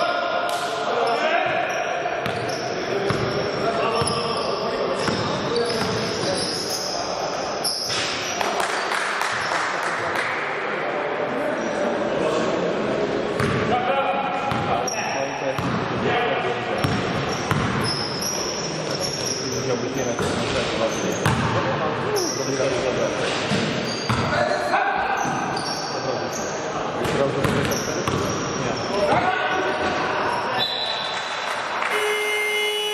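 Basketball game in an echoing sports hall: the ball bouncing on the court floor over and over, sneakers squeaking in short high chirps, and players calling out to each other.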